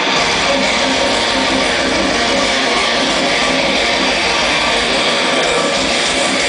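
A British metal band playing live: loud, distorted electric guitars, with a heavier low end coming in right at the start and then running steadily on.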